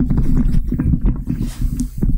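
Microphone handling noise: low rumbling with a string of knocks and bumps right on the mic.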